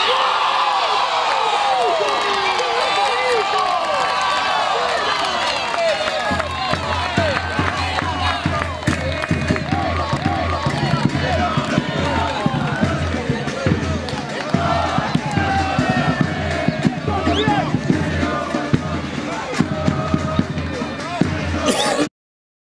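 Crowd of spectators shouting and cheering a goal, many voices overlapping, with a low rhythmic beat joining about six seconds in.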